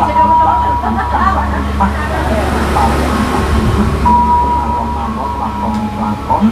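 A wedding video playing on a television: voices and music coming from the TV speaker, with a steady tone that drops out and returns, over a steady low hum.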